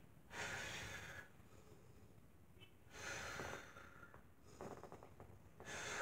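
A woman's deep, controlled breaths, in and out through the nose and mouth, as paced breathing during a workout: three audible breaths, each about a second long.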